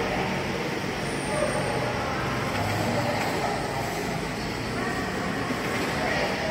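Busy railway station concourse ambience: a steady hum of noise with indistinct voices of passengers.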